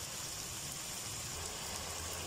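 Chicken strips in spiced sauce sizzling steadily in a nonstick wok: a soft, even hiss.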